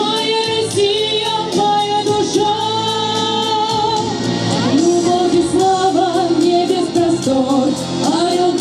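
Two girls singing a Russian patriotic song in Russian through microphones and a PA over a backing track with a steady beat, drawing the words out in long held notes.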